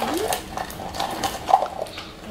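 Plastic Easter egg and candy wrapper being handled: a run of small plastic clicks and crinkles as the candy is taken out of the egg.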